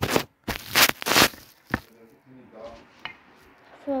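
Handling noise from a phone being moved and set down: four or five loud rubbing, scraping noises against its microphone in quick succession in the first second and a half, then much quieter.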